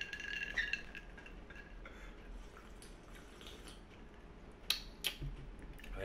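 Clinks from a glass of iced Kool-Aid. A faint ringing tone from the glass fades in the first second, then comes a quiet stretch of faint liquid sounds while it is sipped, and two sharp clinks about half a second apart near the end.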